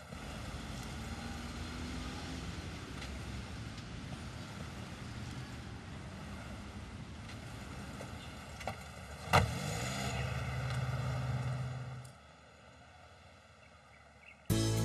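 Street traffic noise, with a car door slamming shut about nine seconds in, the loudest sound. A car engine hums steadily for a couple of seconds after it, before the sound drops away about twelve seconds in.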